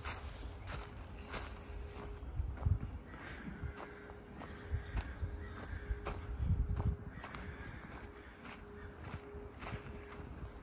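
Footsteps walking on a woodland trail covered in dry fallen leaves, with a soft crunch at each step at an unhurried pace.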